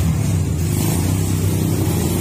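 A vehicle engine idling steadily, a low, even rumble.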